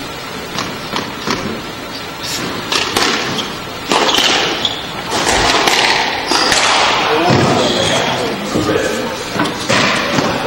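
Squash rally: a series of sharp knocks and thuds as the ball is struck by the rackets and hits the walls and glass of the court, coming quicker in the second half.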